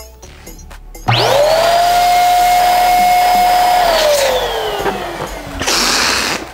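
Electric balloon inflator switching on about a second in, quickly running up to a steady whine as it blows up a double-stuffed latex balloon, then winding down with a falling pitch after about three seconds. A short burst of hiss follows near the end.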